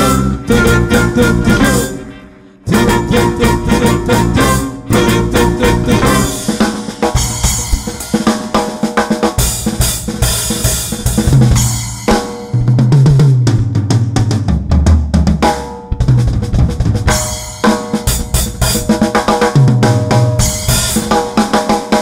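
Drum kit played hard in a live band: snare, bass drum and cymbals drive a fast rhythm over a bass line and other instruments, with a short break about two seconds in.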